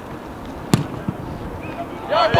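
A single sharp thud of a football being kicked hard, a little before a second in, with a fainter knock shortly after.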